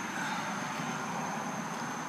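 Steady background hiss with a thin, unbroken high trill of crickets running through it.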